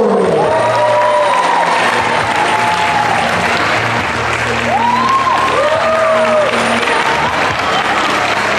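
An audience applauding steadily over music playing through the stage speakers.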